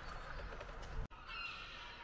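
Faint outdoor ambience with birds calling. About a second in the background changes abruptly, and thin, wavering distant calls are heard.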